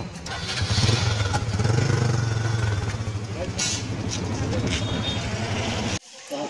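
Motorcycle engine running close by, a steady low drone with an even pulse, under street voices; it cuts off suddenly at the end.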